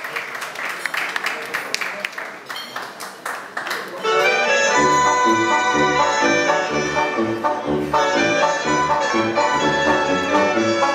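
A small group clapping for the first few seconds. About four seconds in, a loud recorded backing track starts over a loudspeaker: brass-led Mexican regional dance music with a bouncing bass line.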